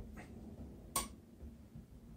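A single sharp click about a second in from a Gamma X-2 drop-weight stringing machine as its weighted bar is let go and drops, pulling tension on the racquet string.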